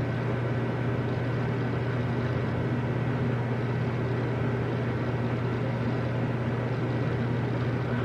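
A steady low hum with an even rushing noise over it, holding at one level without change.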